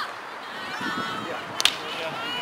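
A field hockey stick strikes the ball once, a single sharp crack about one and a half seconds in.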